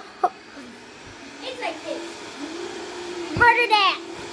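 Young girls' voices making short wordless sounds, then a loud, high squeal that falls in pitch near the end, over a steady low hum that starts about halfway in.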